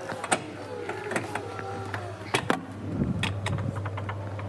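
Door mechanism clicking and a door being pulled open: a sharp click shortly after the start, two more close together a little past halfway, then a low rumble as the door moves, over a steady low hum.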